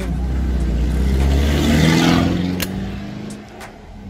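A motor vehicle passing close by: engine and tyre noise swell to a peak about halfway through, then fade, over a steady low engine rumble.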